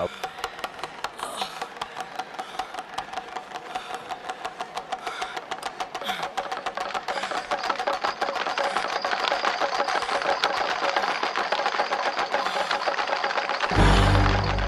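Many hand-twirled pellet drums (den-den drums) rattling fast and continuously, their beads beating the drumheads, growing louder over a held musical tone. A deep low boom comes just before the end.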